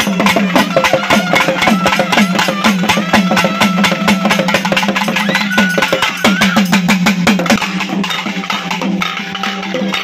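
A group of barrel drums played with sticks in a fast, dense, continuous rhythm of loud strokes, with a high wavering tone over it at times; the drumming thins a little near the end.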